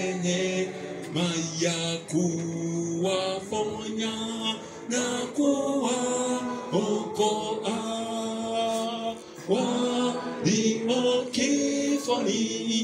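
Church congregation singing a worship song together, men's and women's voices on long held notes that change pitch every second or so.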